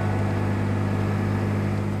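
Microcar (brommobiel) driving, a steady low engine drone heard from inside the cabin.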